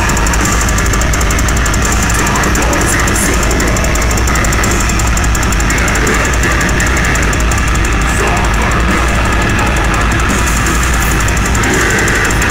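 Live metal band playing loud, with drum kit and distorted electric guitar in a dense wall of sound that stays at the same loudness throughout.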